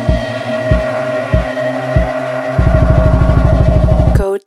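Electronic music: a sustained synth chord over a kick drum hitting about every two-thirds of a second. About two-thirds of the way in, a fast buzzing bass roll takes over, about fifteen pulses a second, building toward a drop.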